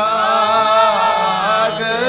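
Sikh kirtan: male voices singing a Gurbani hymn over sustained harmonium chords, the singing coming in louder right at the start.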